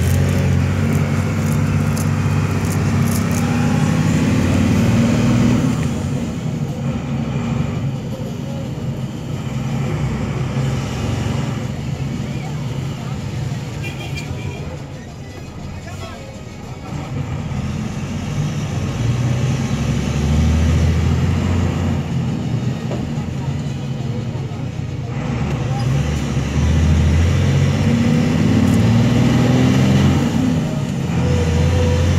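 Engine of a moving road vehicle heard from inside the cabin while driving. Its pitch climbs as it accelerates near the start, it eases off and quietens around the middle, and it picks up and climbs again near the end.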